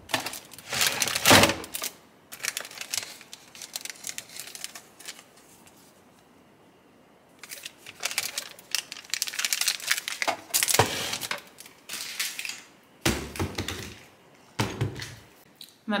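Toiletries being rummaged through in a cabinet under a bathroom sink: plastic bottles and packets knock and rustle, and packaging crinkles. The sound comes in several separate bursts with quieter gaps between.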